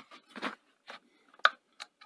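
A few light clicks and taps from hands handling a metal power-supply can and its mains cable, the sharpest about one and a half seconds in.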